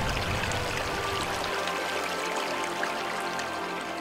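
Soft background music over a running-water sound effect, water flowing as the seas are poured out, slowly fading.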